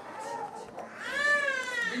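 A small child's high voice: one drawn-out call, rising and then falling in pitch, lasting about a second from about a second in.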